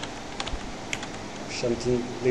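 Computer keyboard being typed on: a few separate key clicks spread over the two seconds.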